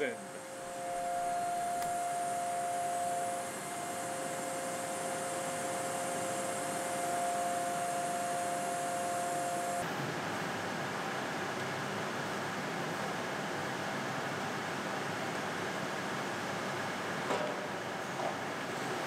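Kern CNC mill spindle whining steadily at 42,000 RPM during its warm-up cycle, a high hum like an angry bumblebee. About ten seconds in the whine cuts off, leaving a steady broad machine noise.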